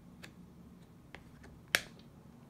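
A Canadian polymer $20 banknote handled and flipped over in the hand, giving a few faint crackles and then one sharp snap near the end.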